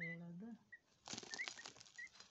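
Peahen chick dust bathing in loose soil: a burst of wing-flapping and rustling, scratchy scattering of soil about a second in, with a few short faint high chirps.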